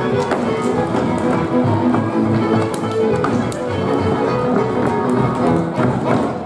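Live folk dance music from a band, with the dancers' boots stamping and tapping sharply on the stage throughout.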